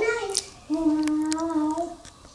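A child's voice singing in a singsong, high and sped up: one held note breaks off about half a second in, and a second steady note lasts about a second.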